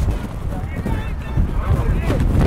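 Sideline spectators and coaches shouting during a play, with wind rumbling on the microphone.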